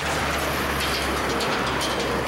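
A truck passing on the road with a steady low rumble, over light metallic clicking from the steel louver panels of a snow fence being worked by hand.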